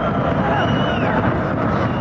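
Football stadium crowd: a steady din of many fans' voices from the stands, with faint wavering singing in it.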